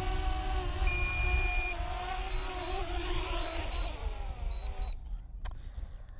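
DJI Mini 2 drone's propellers buzzing as it descends from a low hover to land on a low battery, the pitch sagging slightly before the motors cut out about five seconds in. Wind rumbles on the microphone, and a short electronic beep sounds about a second in, followed by fainter repeated beeps.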